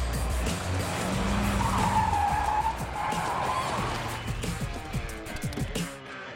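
A car braking hard, its tyres squealing for about two seconds as it skids to a stop, over loud soundtrack music.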